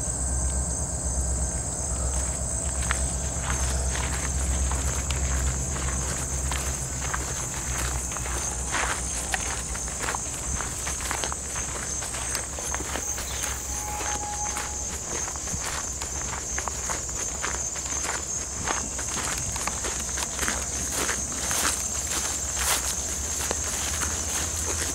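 Footsteps on a gravel and grass path, with short crunches that come more often from about a third of the way in. Under them, insects trill steadily at a high pitch.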